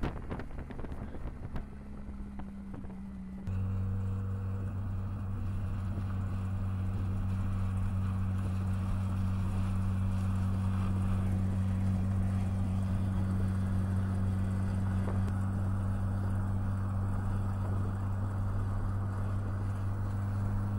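A vehicle engine running at a steady speed, a low even hum that comes in suddenly a few seconds in and holds without change. Wind noise on the microphone comes before it.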